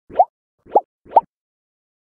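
Three quick rising 'bloop' pop sound effects in a row, about half a second apart, each a short upward swoop in pitch, as an animated logo intro.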